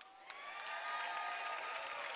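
Audience applauding and cheering, building up about half a second in and then holding steady.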